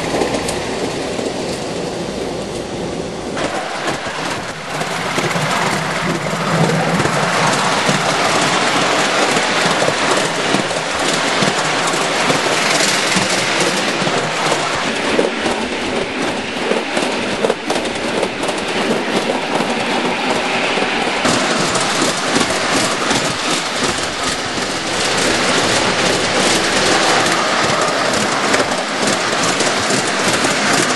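Ride-on miniature railway train running, heard from on board: a continuous rattle of wheels on the track, with rapid clicks over the rail joints and a steady rush of noise behind them.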